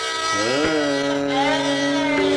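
Hindustani classical music in Raag Aiman (Yaman): a melody line glides up about half a second in and settles on a held note over a steady drone, from an old archival recording.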